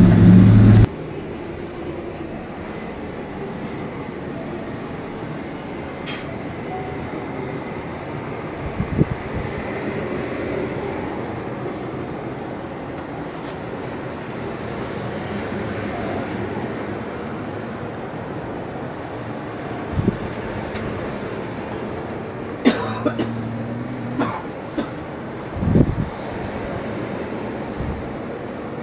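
Airliner cabin noise with low engine tones cuts off abruptly under a second in. It gives way to the steady room noise of a capsule hotel corridor. A few short knocks and thumps break the steady noise, a handful in all, spaced several seconds apart.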